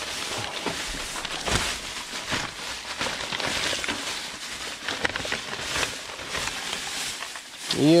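Plastic trash bags and paper store flyers rustling and crinkling as hands dig through them: a steady run of rustling with frequent sharp crackles.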